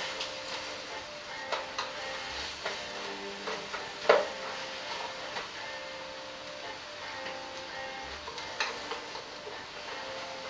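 Chopped vegetables and beef sizzling in oil in a steel soup pot while a wooden spoon stirs them, with a handful of sharp knocks of the spoon against the pot. The loudest knock comes about four seconds in.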